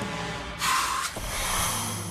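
A long, rumbling cartoon belch of rotten-egg breath, with a hissing gust about half a second in.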